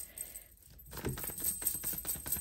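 A deck of oracle cards being shuffled by hand: a rapid patter of small card clicks that starts about a second in.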